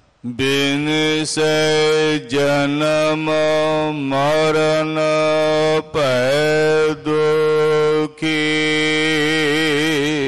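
A man's voice chanting Sikh gurbani in long, steadily held notes, broken by short pauses for breath every second or two, with the pitch dipping and returning a couple of times.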